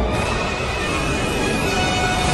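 A starship warp-jump sound effect over film music: a dense rushing whoosh with a deep rumble and a few held high tones.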